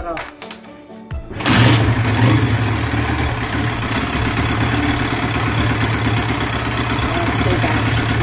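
A Honda Sonic 125's single-cylinder four-stroke engine starts about a second and a half in and settles into a steady idle. It is its first run on a newly fitted carburettor.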